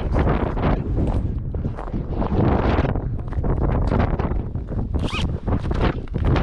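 Ice-fishing shelter fabric rustling and flapping as it is handled, with wind buffeting the microphone.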